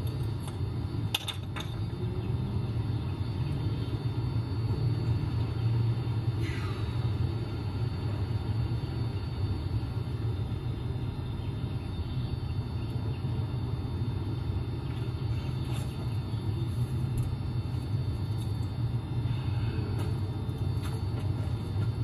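A steady low rumble, with a few faint clicks and knocks scattered through it.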